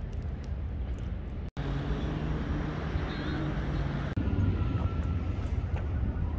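Outdoor urban background noise: a steady low rumble, broken twice by abrupt cuts, with a steady low hum in the middle stretch.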